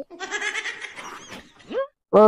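A long, wavering, bleat-like cry lasting about a second and a half, ending in a short upward glide near the end.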